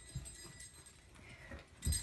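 A small child's feet stepping and stomping on a carpeted floor while dancing: soft dull thumps, with a louder thump near the end.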